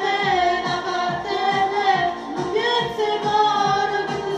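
A solo voice singing a song into a handheld microphone over a pop backing track with a steady beat, holding long notes.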